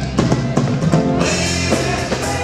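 Live rock-and-roll band playing an instrumental passage, with a drum kit beating under guitar and other sustained notes.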